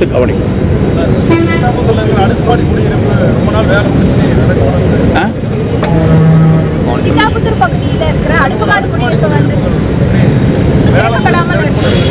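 Men talking in Tamil, in short stretches that the speech recogniser did not transcribe, over a steady low rumble of background noise.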